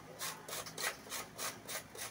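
A whole head of green cabbage grated on a metal box grater: rapid rasping strokes, about three or four a second.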